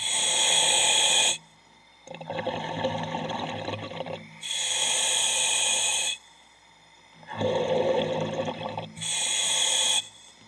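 Underwater diver breathing through a regulator, about two and a half breath cycles: a loud hiss of air with each breath alternates with a lower, rougher bubbling rush, with short quiet gaps between.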